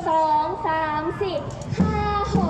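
A woman counting in over a microphone, "two, three, four" in Thai, with drawn-out syllables. Near the end the beat starts with a sudden low thump.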